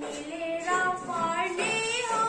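A schoolgirl singing a song solo in one voice, holding notes and sliding from one pitch to the next.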